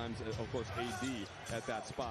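A man talking over basketball game sound, with a basketball bouncing on the hardwood court.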